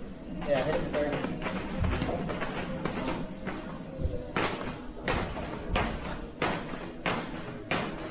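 Heavy battle ropes slapping against a rubber gym floor in repeated slams, settling into an even rhythm of about one and a half slams a second in the second half, under a song with vocals.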